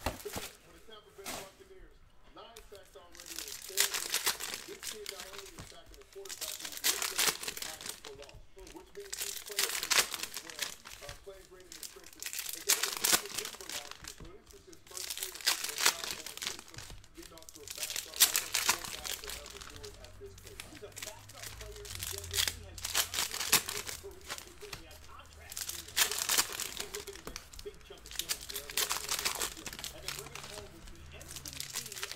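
Foil trading-card pack wrappers crinkling and tearing as packs are torn open by hand, in bursts every few seconds.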